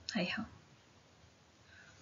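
Speech: the end of a spoken phrase in the first half-second, then a pause of near silence with only faint room tone.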